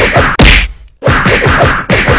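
A fast, even run of dubbed whacking hits, about four to five a second, for a mock beating. One very loud whack lands about half a second in, followed by a short break before the hits start again.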